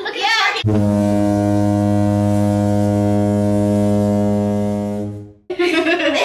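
A steady, low horn-like tone with a buzzy edge, held at one pitch for about five seconds: it starts suddenly just under a second in and fades out near the end.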